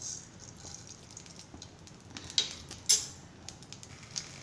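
Mustard seeds tipped into hot oil in a non-stick pan: a short hiss as they land, then two sharp pops about half a second apart and a few faint ticks, the seeds just beginning to splutter in oil hot enough for tempering.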